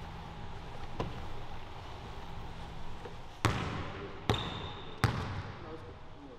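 A basketball bouncing on a hardwood gym floor, echoing in the hall. There is a light bounce about a second in, then three loud bounces a little under a second apart near the end.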